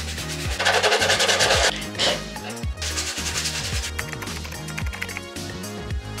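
Rapid rasping strokes on a hollow plastic pumpkin decoration as its surface is roughened for gluing: a loud spell of about a second, then a fainter one midway. Background music with a steady beat plays throughout.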